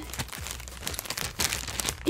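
A clear plastic bag crinkling as it is handled and opened, a run of irregular small crackles.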